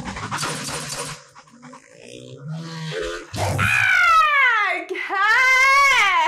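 A woman's excited high-pitched shriek that slides down in pitch, then a second high, wavering cry breaking into laughter, after about a second of noisy action sound from a motorcycle chase in a film.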